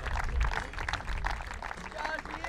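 Applause from a small group of people clapping steadily as medals are handed out.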